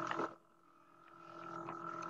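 Faint steady hum with a few held tones. It cuts off to dead silence about a third of a second in, then fades back up over the last second.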